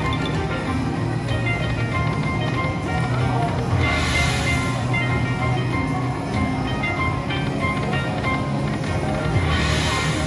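An Aristocrat Dragon Link "Autumn Moon" slot machine playing its free-games bonus music, with short chiming notes as wins are added up. There are two brief swells of hiss, about four seconds in and near the end.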